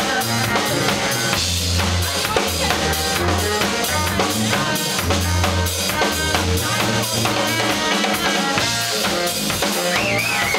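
Live trio of sousaphone, saxophone and drum kit playing: the sousaphone holds long low bass notes in phrases under busy drumming with bass drum and snare, while the saxophone plays short lines above.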